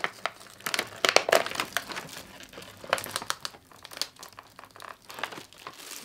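Plastic packaging crinkling and crackling as it is handled, in irregular bursts that thin out a little after four seconds in.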